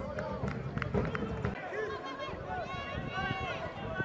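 Live football match sound: voices shouting on the pitch and in the stands, with a few sharp knocks in the first second and a half, likely the ball being kicked. A long rising and falling shouted call stands out about halfway through.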